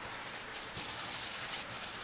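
Hand rubbing dry pastel into paper, blending the colour: a dry swishing that comes in back-and-forth strokes, the longest about a second long in the middle.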